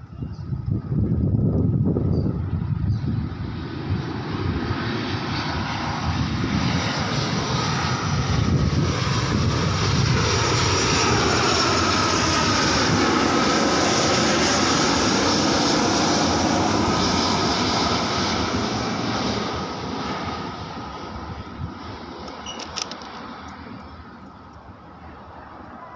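Batik Air Boeing 737 jetliner passing low overhead on approach with its landing gear down. The engine noise builds with a steady whine in it, is loudest around the middle, then fades away over the last several seconds.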